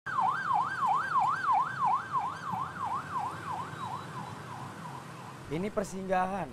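An emergency vehicle siren wailing fast up and down, a little over two sweeps a second, fading away over the first few seconds. A voice comes in near the end.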